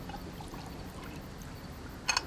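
Liquid poured from a bottle into a cup, a faint trickle over a low, steady background.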